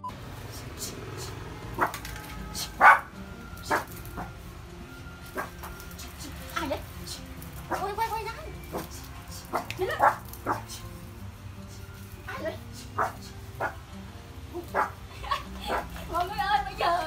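Toy poodle barking in short, sharp, separate barks, about a dozen spread irregularly, the loudest about three seconds in: alarm barking at a disguised stranger coming into the house.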